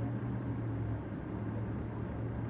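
Steady low hum of a stationary car, heard from inside its cabin.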